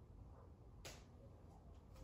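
Near silence: room tone with a low hum and one faint click a little under a second in.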